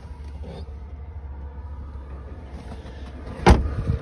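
A car's rear passenger door shut with one sharp thud about three and a half seconds in, over a low steady rumble.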